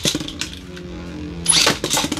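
A Beyblade spinning top whirring on the plastic stadium floor, then about a second and a half in a second metal-wheeled Beyblade (Nightmare Longinus) is launched into the stadium and lands with a clatter, starting a rapid run of clicks as it spins.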